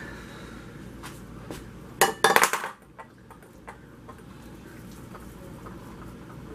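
A brief clatter of kitchen utensils and dishes about two seconds in: a quick run of sharp clinks and knocks with a little ringing, with a few faint clicks before and after.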